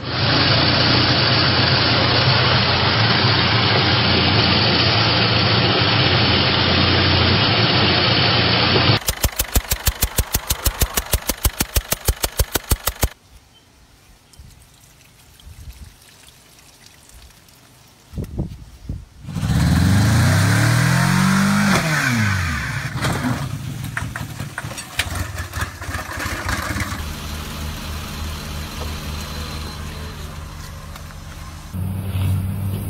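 A run of vehicle sounds: an engine running steadily for about nine seconds, then a rapid, regular knocking of about five strokes a second for about four seconds, then a much quieter stretch. Near the end an engine revs up and back down and settles into a steady idle.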